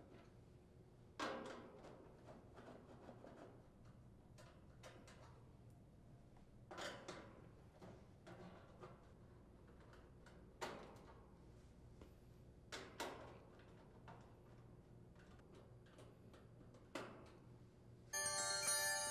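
Near silence broken by about half a dozen brief, faint clicks and scrapes from a hand nut driver backing sheet-metal screws out of the top grill cover of a central air conditioner's condensing unit.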